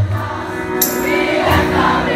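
Live pop-punk song heard from the crowd: the full band drops out at the start, leaving many voices singing together over a sparse beat.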